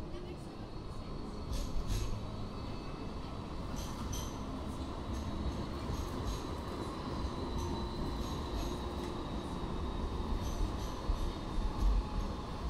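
Sydney light rail tram, an Alstom Citadis X05, running along its street track with a steady low rumble and a faint high whine.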